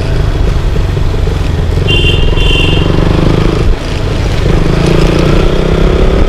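KTM Duke 200's single-cylinder engine running as the bike rides along at low speed (about 25–30 km/h on the dash), heard from the rider's seat. The engine note dips briefly about halfway through. Two short high beeps come about two seconds in.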